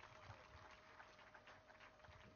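Near silence, with a faint steady hum and a few faint ticks.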